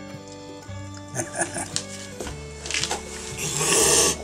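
A cat hissing, one loud breathy hiss near the end, over background music; a few short soft sounds come about a second in.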